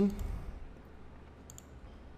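A couple of faint computer mouse clicks about one and a half seconds in, over quiet room tone.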